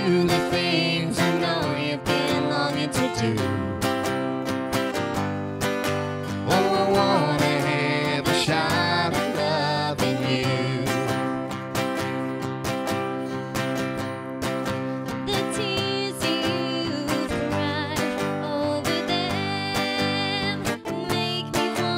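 Acoustic guitar strummed in time under a woman's singing voice, a country-style song performed live.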